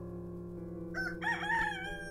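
A rooster crowing once, starting about a second in and drawn out for about two seconds, over soft sustained background music.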